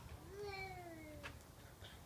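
A single long call that rises briefly and then slides slowly down in pitch for about a second, with a short sharp click partway through.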